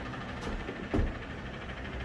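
A person's footsteps as she walks a few paces and stops: a faint tap, then a dull thud about a second in.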